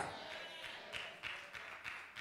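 Faint hall room tone through the church's microphone system, with the reverberant tail of a woman's amplified voice fading away at the very start.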